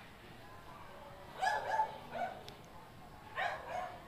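A dog barking faintly, a few short barks: a pair about a second and a half in, one at about two seconds, and another pair near the end.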